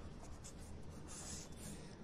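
Pen writing on notebook paper: faint scratching strokes as digits are written and a line is drawn.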